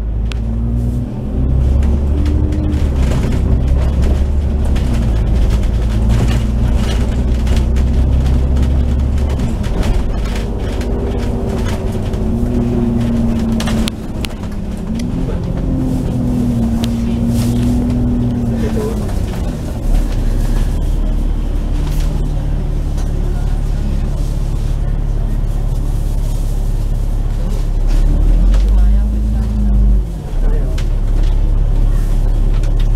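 Bus engine and transmission heard from on board as the bus drives through traffic: a steady low rumble with a whine that rises and falls in pitch as it speeds up and slows, plus short rattles from the body.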